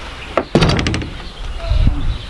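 Glass-panelled wooden summerhouse door being moved, with a sudden rattle about half a second in and a low rumble.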